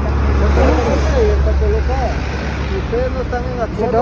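Road traffic passing close by: a low vehicle rumble, loudest in the first two seconds and then fading, with voices talking over it.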